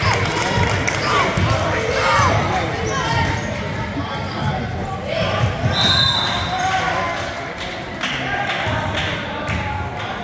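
A basketball bouncing on a hardwood gym court during play, with spectators' voices and shouts echoing through the gym. A short high-pitched tone sounds about six seconds in.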